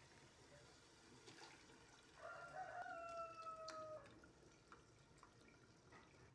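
A rooster crowing faintly: one long call about two seconds in, lasting nearly two seconds and falling slightly in pitch, over quiet room sound with a few faint ticks.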